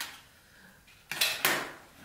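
Hard plastic Numicon shapes clattering against each other and their tray as they are handled, with a click near the start and a louder rattle about a second in.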